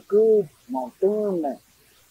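A man speaking in Kayapó in three short phrases separated by brief pauses.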